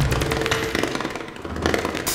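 Recorded experimental percussion music: two drum kits played in dense, rapid strikes over a low rumble, with brief held tones mixed in from reworked dub-plate material.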